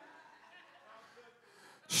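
A pause in a man's preaching: faint room sound, then a quick intake of breath into the microphone just before his voice comes back in at the very end.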